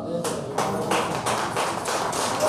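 Audience applause breaking out about a quarter second in, as the aria ends: dense, irregular hand-clapping.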